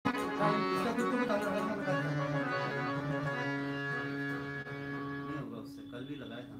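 Harmonium playing sustained chords over a steady held low note, the notes changing every second or so and thinning out near the end.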